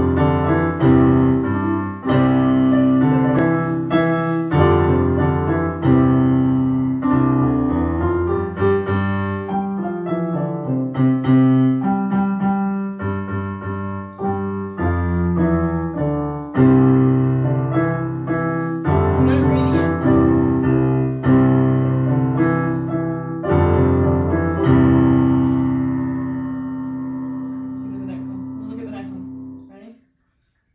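Digital piano played four hands, a duet of chords under a melody with a steady beat. The last chord is held and dies away near the end, then stops.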